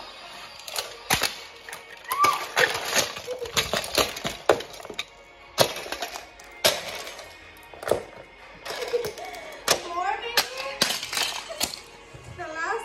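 Plastic toy cars cracking and snapping under high-heeled platform shoes, a long run of sharp cracks, crunches and heel knocks on a wooden floor, several a second at times.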